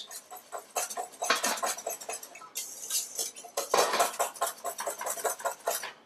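Wire whisk beating a thick egg-yolk sabayon in a stainless steel mixing bowl: quick, repeated clicks and scrapes of the wires against the metal sides.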